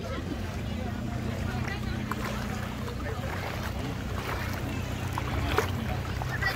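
A boat engine running steadily with a low hum, fading out near the end, under the chatter of people wading around it.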